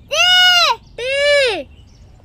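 A high-pitched, child-like voice calling out the letter "T" twice, each call drawn out for about half a second with its pitch rising then falling.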